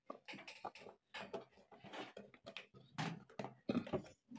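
Milk pouring from a carton into a bowl of oatmeal, followed by a scattering of soft knocks and clicks as the carton and dishes are handled.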